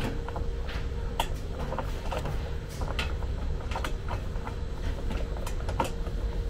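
A few faint scattered clicks and taps of a steel roof bracket and M6 bolts being handled and fitted by hand, over a steady low rumble and a faint steady hum.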